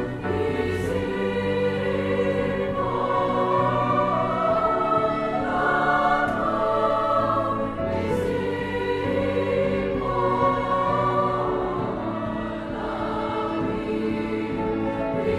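Youth choir singing long held notes in harmony, accompanied by piano and strings.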